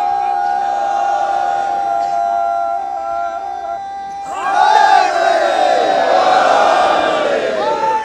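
A long, steady held tone, then a large crowd shouting together in response from about four seconds in.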